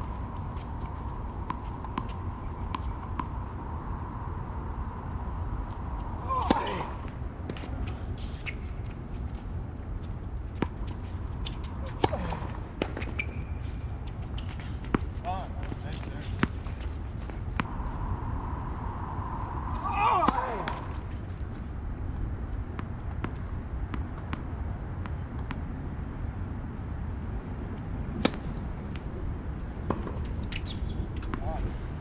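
Tennis on an outdoor hard court: sharp racket-on-ball hits and ball bounces every few seconds over a steady low rumble, with a few short squeaks or calls in between.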